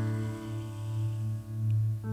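Worship band's keyboard and electric bass holding a sustained chord, a strong low bass note steady underneath.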